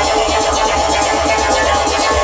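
Electronic house music from a DJ set played loud over a festival sound system: a steady bass line under a fast, evenly repeating synth pattern, with no vocal in this stretch.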